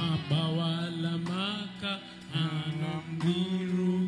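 A man singing a slow worship song into a microphone, holding long, steady notes with short breaks between phrases.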